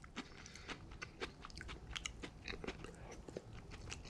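Faint mouth sounds of someone chewing a mouthful of Cantonese fried rice with lettuce: irregular small clicks and crunches.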